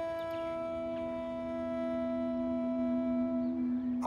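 Background music score of sustained held notes forming a drone-like chord. A lower note comes in just after the start and grows louder, while a higher note fades out near the end.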